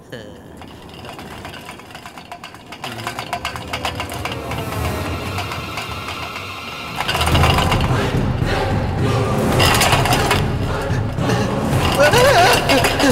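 Horror film score building up tensely, then surging suddenly to a much louder level about seven seconds in.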